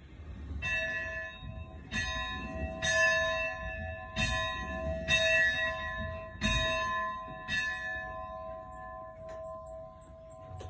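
A bell rung to start the school day: about seven strikes, roughly a second apart, each ringing on and overlapping the next, the last still sounding at the end.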